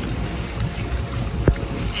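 Outdoor hot tub water churning with a steady rush, with wind rumbling on the microphone. A single sharp knock comes about one and a half seconds in.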